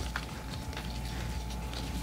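Faint handling noise: a few light clicks as a toilet flapper's ball chain and the small plastic lock piece on its cork float are worked by hand, over a faint steady hum.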